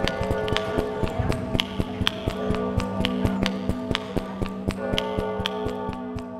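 A large bell tolling for midnight, its steady ringing tones held under a quick, uneven run of sharp taps, about three or four a second.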